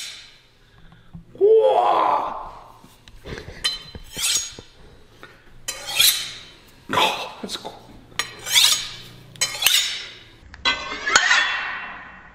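A freshly quenched, clay-coated steel knife blade being scraped and knocked with a hand-held piece of steel to strip off the hardening clay: a string of sharp metallic scrapes and clinks, some ringing on. The last strokes are ones that "didn't sound good", the sign that the blade had cracked in the quench.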